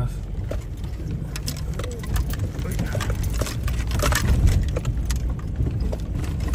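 Car crawling over a loose, rocky dirt road: a steady low rumble of engine and tyres with irregular crunches and knocks as stones shift under the tyres and the car jolts over rocks, busiest about four seconds in.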